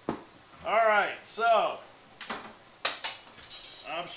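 Two short vocal sounds from a man, then sharp clicks and a high metallic clinking rattle in the last second and a half as the track saw is taken in hand on its aluminium guide rail. The saw's motor is not running.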